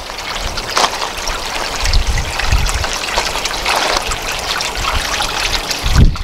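Water from a small garden-pond waterfall trickling and splashing steadily as it spills from a spillway into the pond.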